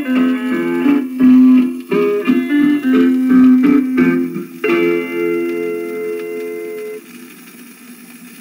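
A 78 rpm record of a western swing band played on an old phonograph, with guitar phrases ending in one held final chord about five seconds in. The chord stops about seven seconds in, leaving the record's faint surface hiss.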